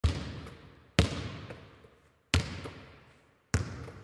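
Four separate heavy thuds about a second apart, each dying away over roughly half a second.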